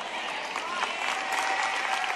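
Congregation applauding, with a few faint voices among the clapping.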